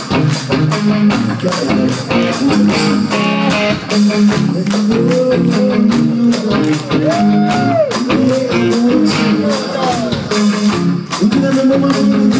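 Live hard-rock band playing: electric guitar lead with string bends about halfway through, over bass guitar and a steady drum beat, recorded from among the audience.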